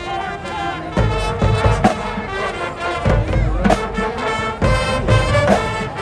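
Marching band playing on the field: sustained brass chords over a drum beat, with heavy low hits about once a second.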